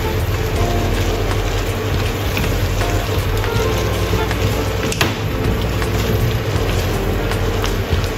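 A wok sizzling as julienned yam bean strips cook in a little sauce and water, with a wooden spatula stirring them against the pan; one sharp knock about five seconds in.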